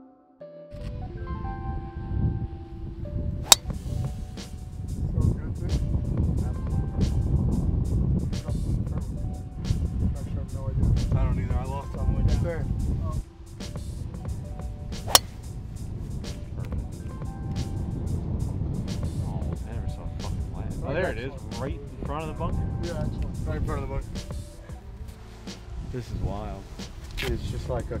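Low rumble of wind on the microphone under voices and background music, with two sharp cracks of a driver hitting a golf ball off the tee, one about three and a half seconds in and one about fifteen seconds in.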